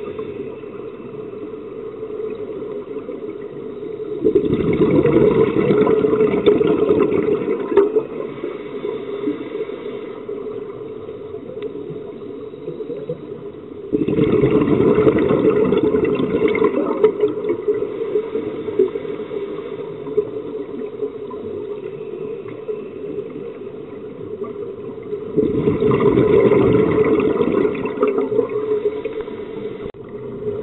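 A scuba diver's regulator breathing underwater: three long bubbling exhalations, about ten seconds apart, with quieter steady noise between them.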